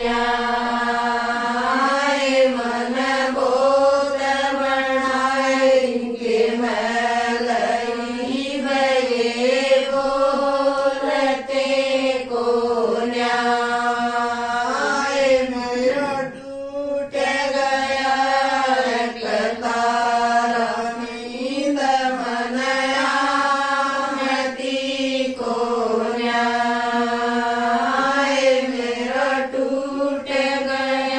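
A group of women singing a folk song (geet) together in unison, with long held notes and no instruments. There is a short break about 16 seconds in.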